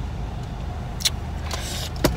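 Steady low rumble of a running car heard from inside the cabin, with a single sharp click about a second in and a brief rustle near the end.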